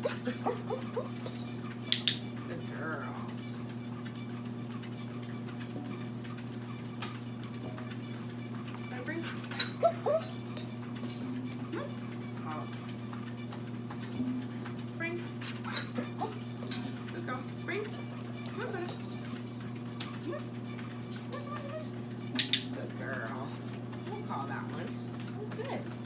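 Stainless steel dog bowl knocked and clanking a few times as a young shepherd dog noses and mouths it, with short high whines from the dog. A steady low hum runs underneath.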